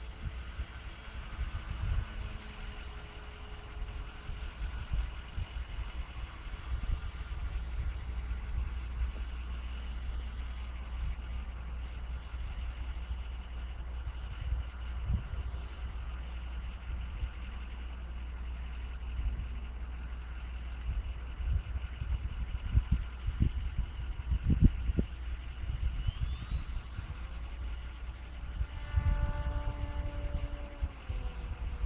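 Electric motor and propeller of a Flyzone Tidewater RC float plane in flight, a thin high steady whine at a distance that rises in pitch near the end, when a lower drone also comes in. Uneven wind rumble on the microphone lies underneath.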